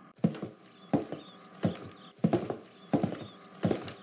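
Footsteps on a wooden floor, walking at an even pace: a firmer step about every two-thirds of a second, each with a lighter tap right after it.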